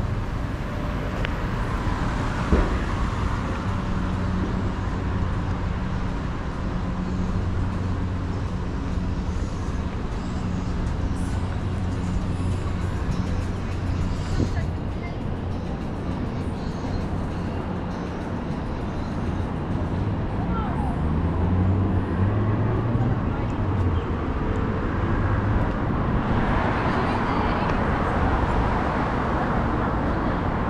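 Street traffic: a vehicle engine runs with a steady low hum, changes pitch as it moves off about two-thirds of the way through, and a louder rush of passing traffic swells near the end.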